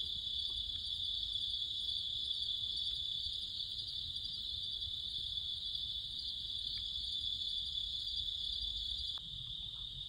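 A steady, high-pitched chorus of night-singing insects.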